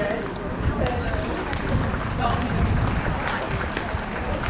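Street ambience of people chatting nearby, indistinct voices over general outdoor noise.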